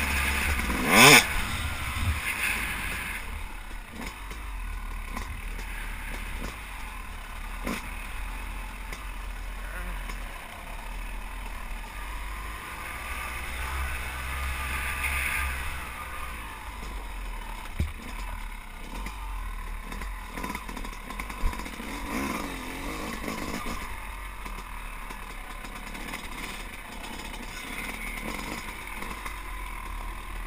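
Yamaha YZ250 two-stroke dirt bike running on a trail, heard from a camera on the bike, with a sharp rev about a second in. A few short knocks from the bike over the rough ground come later.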